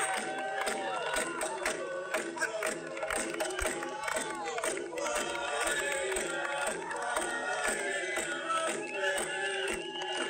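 A crowd of many voices shouting and chanting together, over music.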